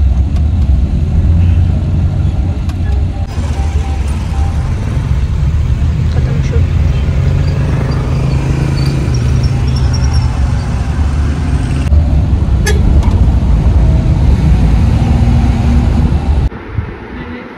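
Engine and road noise heard inside a moving vehicle's cabin: a loud, steady low rumble, with one sharp click late on.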